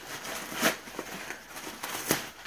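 Packing material rustling and crinkling as it is pulled away from a wrapped item, with a louder rustle about two-thirds of a second in.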